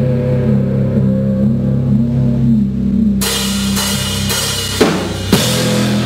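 Instrumental rock trio playing live: bass and guitar hold low sustained notes with a slowly wandering melodic line, then the drum kit comes in about three seconds in with crashing cymbals and two hard hits near the end.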